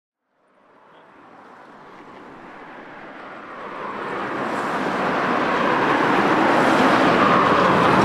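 Street traffic noise fading in from silence, a steady wash of road noise that grows louder over the first six seconds and then holds.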